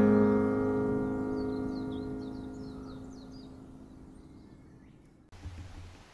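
Steel-string acoustic guitar's final strummed chord ringing out and slowly fading away, with a bird chirping faintly several times in the background. The sound cuts off about five seconds in.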